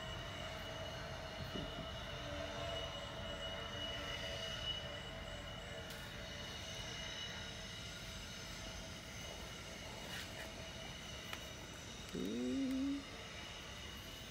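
Steady mechanical background hum with a faint, constant high whine. Near the end comes a short vocal sound that rises in pitch and then holds for about a second.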